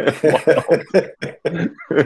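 Laughter: a quick run of short, pitched pulses.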